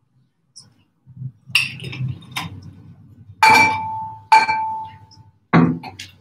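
A drinking glass clinks twice, about a second apart, each strike ringing on briefly with a clear tone, after some lighter handling knocks. A hard knock follows near the end.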